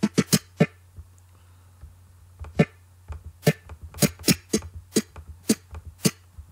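Brief choppy snippets of a music track, each a short click-like burst, sounding as the playhead is stepped and scrubbed through the song in the editing software: a quick cluster at the start, a lone one near the middle, then a rapid run over the last three seconds. A low steady hum lies under them.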